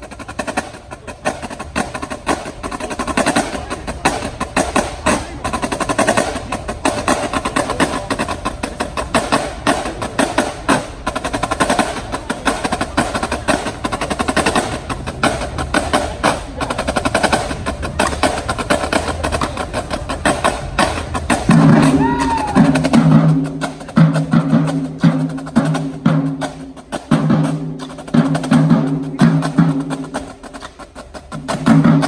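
Marching drumline playing: fast, dense snare drum strokes run throughout, and about two-thirds in, deeper pitched drums come in with a repeating rhythmic pattern.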